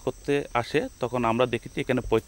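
A man speaking, with a steady high-pitched drone of insects behind him.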